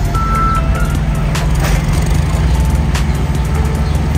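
A forklift works at the back of a trailer over a steady low engine drone. Its backup beeper sounds once near the start, and a few sharp knocks come in the middle.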